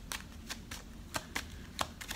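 Tarot deck being shuffled by hand: a quick, uneven string of sharp card snaps, about eight in two seconds.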